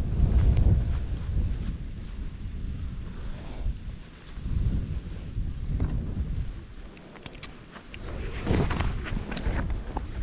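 Wind buffeting the camera microphone in gusts, easing off briefly twice. In the last few seconds there is crunching on loose gravel with a run of sharp clicks.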